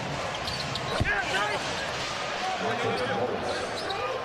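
Basketball game sound from an arena floor: sneakers squeaking on the hardwood court and a single ball thud about a second in, over steady crowd noise.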